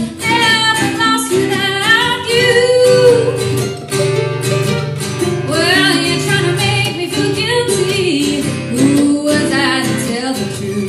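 A woman singing a melody over an acoustic guitar and a mandolin played together, a live acoustic duo.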